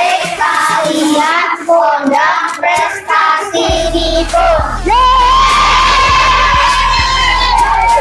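A group of children singing together in unison. Then a music track with a steady beat starts, and the children let out a long, high held shout.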